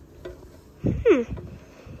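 Manual can opener being cranked around the rim of a large #10 can, giving faint ticks and scraping. A woman's short falling "hmm" about a second in is the loudest sound.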